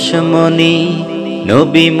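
A man singing a Bengali naat (Islamic devotional song), holding a long sung note, then gliding into a new note about one and a half seconds in.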